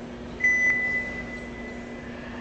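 A single electronic beep: one steady high tone that starts sharply about half a second in and fades away over about a second and a half, over a low steady hum.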